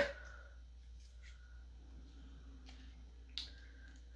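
A stuck lip balm being worked at in its small cosmetic packaging: quiet handling noise with light clicks, the sharpest about three and a half seconds in. It opens on the tail of an exasperated "ugh".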